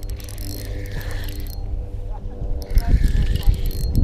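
Spinning fishing reel being cranked against a hooked fish, its gears whirring steadily, with a run of ratcheting clicks about three seconds in.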